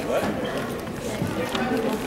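Indistinct voices of people talking in a large hall, a steady background murmur with no clear words.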